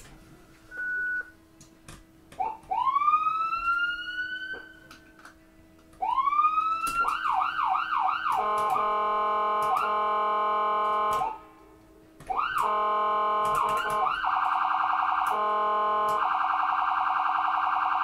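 Electronic ambulance siren running through its tones: a short beep, a rising wail that winds up and cuts off twice, quick yelps, then a steady blaring tone lasting a few seconds. After a one-second gap it winds up again, yelps, and switches between a rapid warble and the steady tone.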